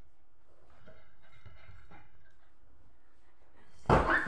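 Faint movement sounds of a dog playing, then a sudden loud thump near the end as the dog jumps up at the camera.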